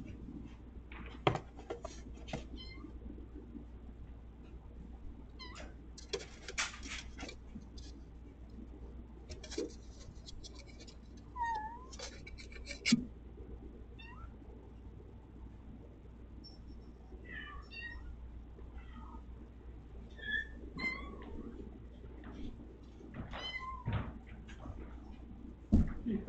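A cat meowing in several short calls through the second half. Earlier there are bursts of rustling and sharp clicks from a fabric play tunnel as a kitten tussles with a toy inside it.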